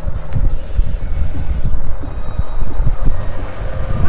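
A small vehicle driving past close by in the street: a low, uneven rumble with a faint steady hum.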